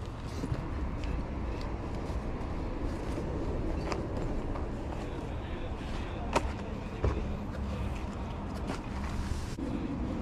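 Open-air market ambience: a steady low rumble with distant voices, and a few short sharp clicks, the loudest a little past six seconds in.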